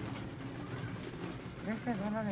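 Shop background: a steady low hum and indistinct murmur, with a brief sing-song vocal sound near the end.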